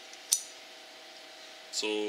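A single sharp metallic snap about a third of a second in: a drum-brake shoe return spring coming off the anchor pin on a brake spring tool.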